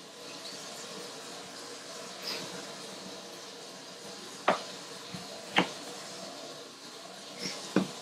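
Kitchen knife cutting a soursop in half on a plastic cutting board: a faint, steady background broken by three sharp taps, about halfway through and near the end.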